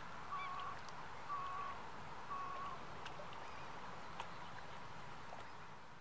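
Distant birds calling faintly over a steady background hiss: a couple of short arched calls right at the start, then three short, even calls about a second apart.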